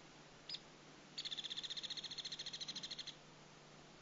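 A songbird: one short high chirp about half a second in, then a rapid, even, high-pitched trill lasting about two seconds.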